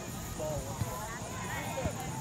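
Scattered distant shouts and calls from youth soccer players and spectators across the field, with a few soft thumps.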